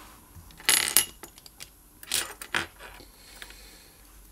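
Small metallic clinks and taps of watchmaker's tools and parts being handled and set down on the bench. The loudest is a double clink about a second in, followed by lighter clicks around two to two and a half seconds.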